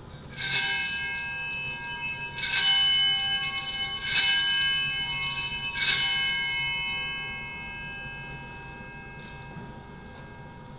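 Altar bells (sanctus bells) rung four times, about two seconds apart. Each ring is a cluster of bright tones that rings on, dying away a couple of seconds after the last one. They mark the elevation of the newly consecrated host.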